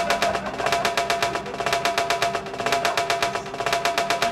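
Electronic music from drum machines and synthesizers: a fast, even run of sharp percussive clicks over a steady held synth tone.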